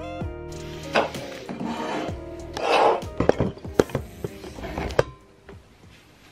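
Music trailing off in the first half-second. Then a few seconds of rustling with several sharp knocks and clicks as a phone camera is handled and set down, settling quiet near the end.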